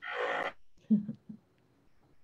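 A short breathy laugh, followed about a second in by a couple of faint, short voiced sounds.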